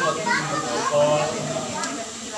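Speech: a man talking, with other voices overlapping in the room.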